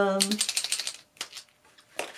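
A white paint pen being shaken, the mixing ball inside rattling in a fast run of clicks for under a second. A couple of single clicks follow.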